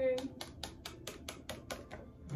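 A quick run of about a dozen light, sharp clicks or taps, roughly six a second.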